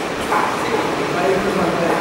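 A man's voice speaking in a steady lecturing manner, picked up close by a headset microphone.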